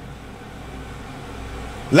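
A steady, low background hum with no distinct events.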